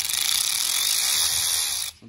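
A Snap-on 14.4 V 3/8-inch drive cordless long-reach ratchet running free with no load: a loud, steady, high whir of its electric motor and gearing, cutting off suddenly just before the end.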